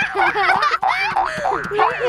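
Children laughing hard together in quick repeated bursts, about four a second, with high-pitched giggles.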